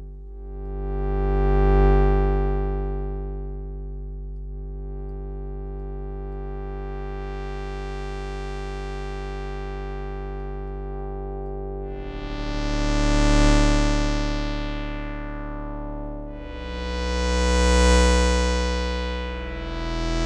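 Sustained synth chords from a looped synthesizer-waveform sample in Kontakt, passed through a low-pass filter whose cutoff a sine LFO sweeps up and down, so the tone opens brighter and closes again every four to five seconds. The chord changes three times, and the filter sweep restarts with each new chord because the LFO re-triggers on every note.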